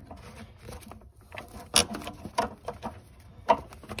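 Screwdriver prying and scraping at the loosened anode rod in a water heater's top port: scattered light clicks and scrapes, with two sharper clicks about two seconds in and near the end.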